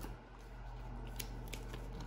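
Faint handling of trading cards and their plastic packaging: soft rustling with a few light clicks, the clearest about a second in.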